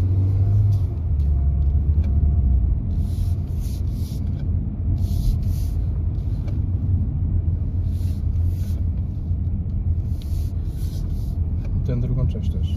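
A car driven at low speed through a cone course on wet asphalt, heard from inside the cabin: a steady low engine and road rumble, with short bursts of hiss coming and going.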